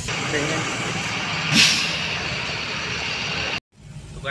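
Steady road-vehicle noise heard from inside a car, with one short, loud hiss of air about one and a half seconds in. The sound cuts off abruptly shortly before the end.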